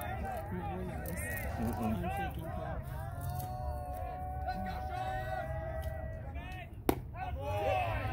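A single sharp crack of a baseball bat striking a pitched ball about seven seconds in, over spectators' chatter, with voices picking up right after.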